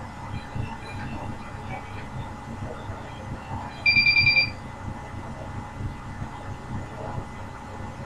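A short run of rapid electronic beeps, about seven in half a second, high-pitched and loud, about four seconds in, over a steady low rumble.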